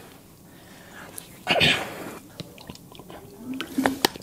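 A short, loud, breathy vocal burst, like a cough, about a second and a half in, then a run of small clicks and handling noises as a plastic water bottle is picked up and its cap worked.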